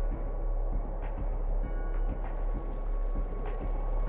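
A steady, deep rumble with a few faint, thin sustained tones above it: the quiet ambient intro of a rap cypher music video, before the beat comes in.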